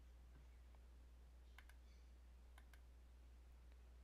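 Near silence with a few faint computer mouse clicks, two quick pairs about a second apart.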